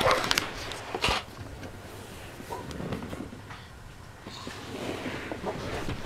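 Handling knocks from the camera being moved: one right at the start and another about a second in, followed by faint, indistinct rustling.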